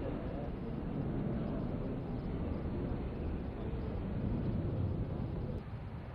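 A steady low rumble of outdoor background noise with faint, indistinct voices. The sound drops slightly near the end.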